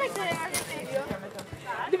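Children's voices talking in the background, with a few sharp clicks or taps in between.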